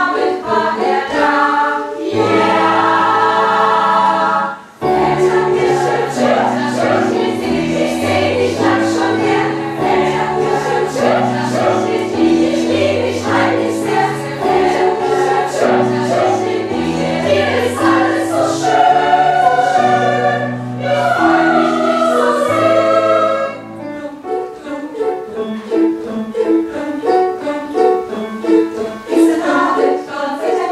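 Mixed choir singing in several parts, with a brief break just before five seconds in. In the last few seconds the singing turns to shorter, clipped notes.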